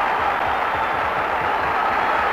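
Football stadium crowd cheering just after a goal is scored: a steady wash of many voices.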